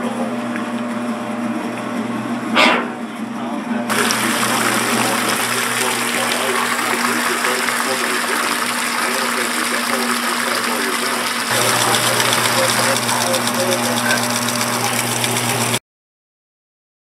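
Amana top-loading washing machine running with a steady motor hum; about four seconds in, a loud steady rush of water starts as the washer drains through its hose into a tub. A short sharp sound comes just before the rush, the hum grows louder about twelve seconds in, and the sound cuts off just before the end.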